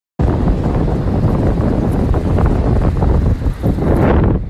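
Wind buffeting a phone's microphone: a loud, rough rushing noise with a deep rumble, cutting in suddenly just after the start.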